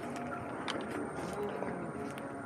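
Zero SR/F electric motorcycle rolling slowly over concrete at walking pace, quiet, with light tyre noise and a few small clicks.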